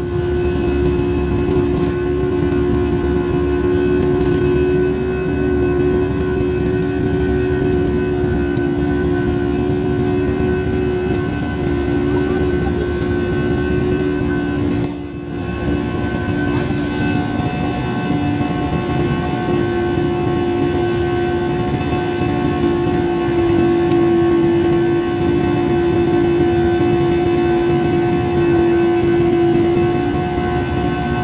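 Jet airliner's engines heard from inside the cabin during the climb after takeoff: a steady drone with a few held hum tones, dipping briefly about halfway.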